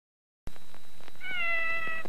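Kitten meowing: after a moment of silence and some faint hiss with soft clicks, one long meow begins a little past halfway and holds nearly level in pitch, falling only slightly.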